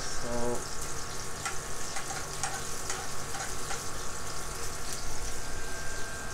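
Chopped garlic sautéing in hot oil in frying pans, with a steady sizzle and light taps of spatulas stirring against the pans.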